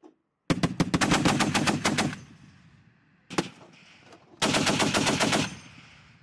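M2 .50-caliber heavy machine gun firing two bursts, about a second and a half and then about a second long, at roughly nine rounds a second. A single shot sounds between the bursts, and an echo trails off after each.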